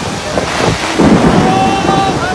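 Torrential rain in a storm, loud and steady, with a deeper rumble swelling about a second in.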